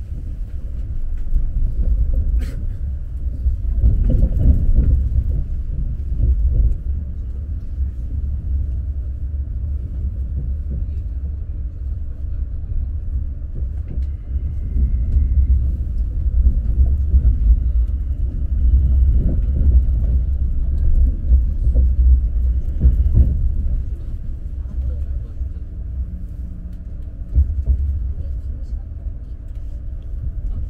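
Alfa Pendular electric tilting train running at speed, heard from inside the passenger car as a steady deep rumble that swells and eases, with indistinct voices in the background.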